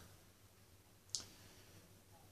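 Near silence with room tone, broken by one short, sharp click a little over a second in.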